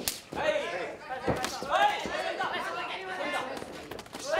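A sharp slap of a kickboxing strike landing on bare skin right at the start, then voices shouting over the fight.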